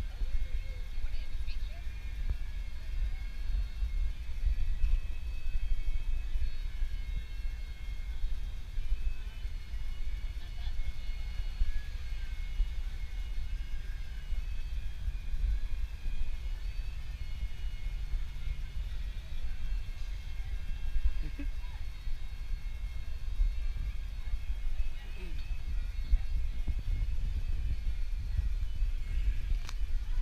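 Low, uneven rumble of outdoor city background noise, with faint background voices.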